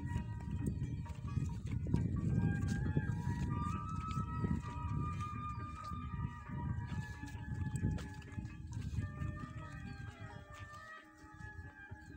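Low, flickering rumble of wind and handling noise on a handheld microphone while walking, with soft footfalls, louder in the first half. Faint music of held notes stepping from pitch to pitch runs underneath.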